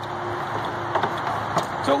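Steady low background rumble of a vehicle engine running, with a faint steady hum over it.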